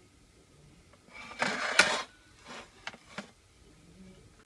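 Handling noise of the soldered XT60 connector being taken out of the metal clamp: a short rustle about a second in, with one sharp click just before two seconds, then a few lighter clicks.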